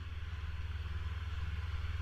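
Steady low hum with a faint even hiss and no other event: the background noise of the voice recording, heard while the narrator is silent.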